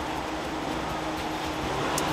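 Steady street traffic noise, with the low hum of vehicle engines running.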